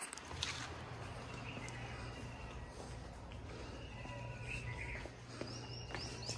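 Footsteps on a hard floor as people walk outside, with a few faint bird chirps over a steady low hum.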